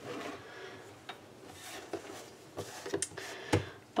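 Quiet kitchen room tone with a few faint clicks and light knocks: one about a second in, and several more towards the end, the strongest shortly before the end.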